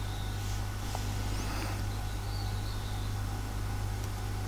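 Steady low electrical hum with a faint hiss: the background of the recording, with no other sound standing out.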